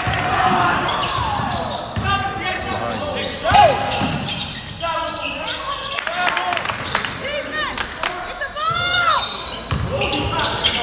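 A basketball bouncing on a hardwood gym floor, with shoes squeaking on the court and voices calling out over the play.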